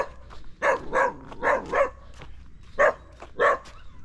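A dog barking: a string of about seven short, separate barks.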